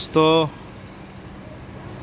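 A voice says one short word at the start, then a steady low background hum with a faint constant tone.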